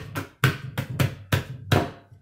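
Hands slapping table-tennis paddles lying flat on a wooden table, drumming an uneven beat of about seven hits. Each hit is a sharp slap with a low thump. The drumming stops just before the end.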